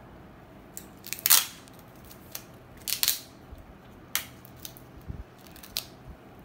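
Adhesive tape being pulled off its roll and torn to secure a gauze dressing: two short tearing noises, about a second in and about three seconds in, followed by lighter clicks and crackles as the tape is handled.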